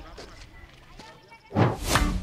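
Faint background noise, then about a second and a half in a loud swoosh transition effect that leads straight into music.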